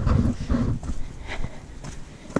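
Footsteps on a stone walkway: irregular low thuds with a steady low rumble underneath.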